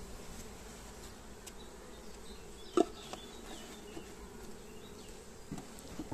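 Honeybees buzzing in a steady hum, with a single sharp knock about three seconds in.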